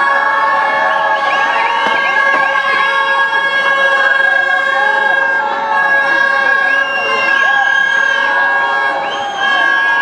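Spectators' celebration noise at a cricket ground: several horn-like tones held steadily together, with many short whistles looping up and down over them, greeting a batsman's milestone. The lowest held tone drops out about a second before the end.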